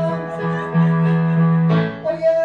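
Electronic keyboard playing sustained chords over a held bass note. The chord changes twice.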